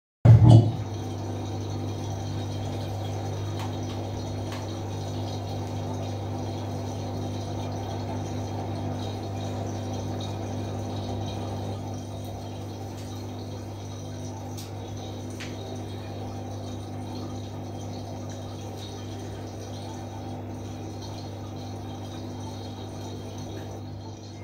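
Samsung front-loading washing machine running with a wet load: a steady motor hum with water sloshing in the drum, after a brief loud burst at the very start, dropping a little in level about halfway.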